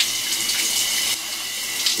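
Shower head spraying water in a shower stall, a steady hiss.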